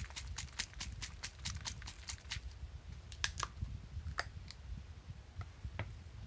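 Plastic paint pot of Nuln Oil wash being handled: a quick, even run of light clicks, about six a second, for the first two seconds or so, then a few scattered clicks.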